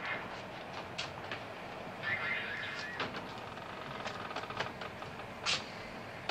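Steady rumbling background noise with a few scattered small clicks and knocks, and one short, sharper sound about five and a half seconds in.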